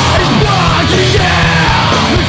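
Loud hardcore punk recording played by a full band, with a shouted vocal over it.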